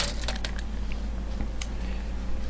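A few light clicks and taps as a metal tape measure is handled against a wooden loom frame: a sharper click at the very start, several small ones within the first half-second and one more past the middle, over a steady low hum.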